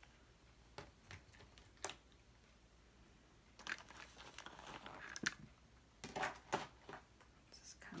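Small leather goods and accessories being handled and set down in a tray: a few light clicks and taps spread through, with a stretch of soft rustling in the middle.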